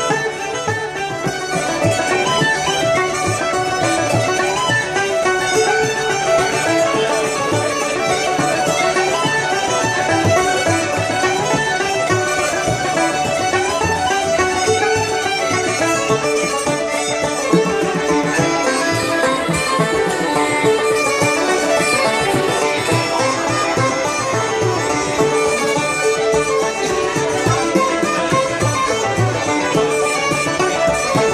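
Irish traditional session music led by fiddle, a tune played without a break.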